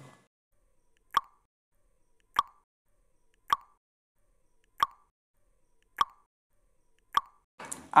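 Quiz countdown-timer sound effect: six short plops, evenly spaced about 1.2 seconds apart, marking the seconds given to answer.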